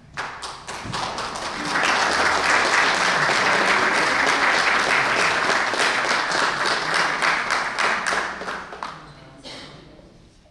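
Audience applauding: the clapping builds up within about two seconds, holds steady, then dies away near the end.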